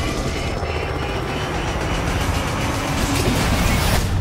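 Helicopter rotor and engine noise over a heavy low rumble, as a burning helicopter goes down.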